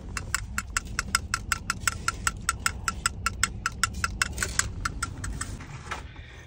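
Low, steady car-cabin rumble with a quick, even ticking over it, about five or six ticks a second, which stops shortly before the end.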